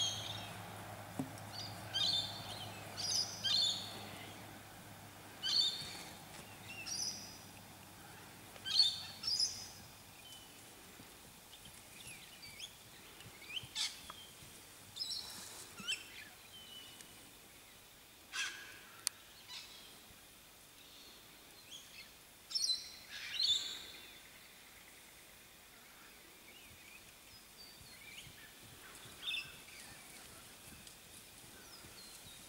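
Wild birds calling outdoors: short, high calls come every second or so for the first ten seconds, then more sparsely. A faint low hum fades out about ten seconds in.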